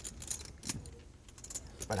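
Poker chips clicking together as players handle and riffle their stacks at the table: a scatter of light, sharp, irregular clicks.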